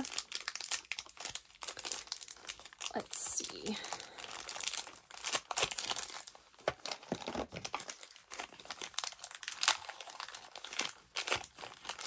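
Packaging crinkling and crackling as it is handled and pulled open to unwrap small bottles, in quick irregular rustles throughout.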